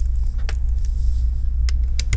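A steady low hum under a few light, sharp clicks, about half a second in and again near the end, as small parts are handled on an opened laptop.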